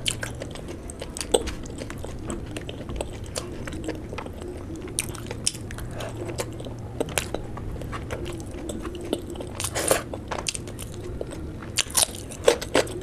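Close-miked person chewing a mouthful of curried meat by hand, with irregular wet mouth clicks and smacks, a denser run of them about ten seconds in.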